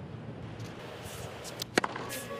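Steady murmur of a tennis stadium crowd, with a sharp crack of a racket striking the ball near the end.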